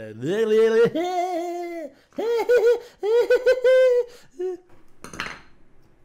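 A man's voice making wordless sounds: it climbs from a normal pitch into a high falsetto and holds there, then breaks into several short, arching high-pitched yelps, followed by a short breathy noise near the end.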